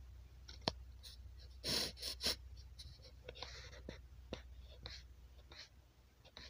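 Faint sounds close to the microphone: a few sharp clicks and short hissing rustles over a low steady hum. The loudest are the rustles about two seconds in.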